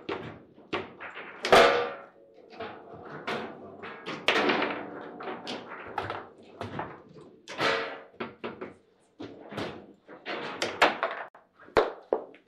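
Foosball table in play: a rapid, irregular run of sharp knocks and thuds as the ball is struck by the plastic players and bounces off the table walls, with the rods clacking as they are worked. The hardest hits come about a second and a half in and again near the end.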